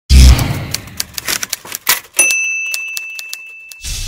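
Typewriter sound effect under an opening title: a heavy thump, then a quick irregular run of key clacks, then the carriage bell dings about two seconds in and rings on as it fades. A swish starts near the end.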